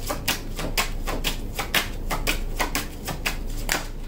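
Deck of Angel Oracle cards being shuffled by hand to draw cards: a quick, irregular run of card snaps and slaps, about five or six a second.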